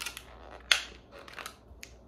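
Thin plastic clamshell of a wax bar being handled: a few short, sharp clicks and crackles, the loudest a little under a second in.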